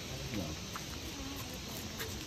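Faint murmur of people talking over a steady high-pitched hiss.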